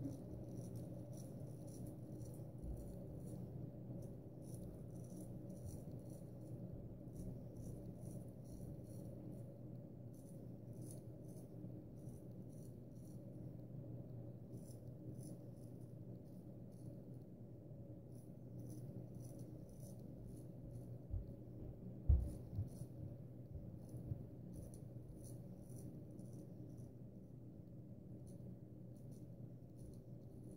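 Gold Dollar 66 carbon steel straight razor scraping through lathered stubble on the chin and jaw, a faint raspy scratch in runs of short quick strokes, cutting sideways across the grain. A soft knock about two-thirds of the way through, over a steady low hum.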